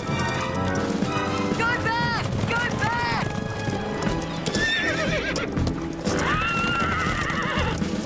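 Horses whinnying several times, the longest call near the end, over the clatter of galloping hooves, with music underneath.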